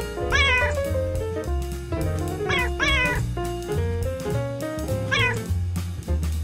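Cat meows over upbeat outro music with a stepping bass line. There are four meows: one about half a second in, two close together around the three-second mark, and one near the end.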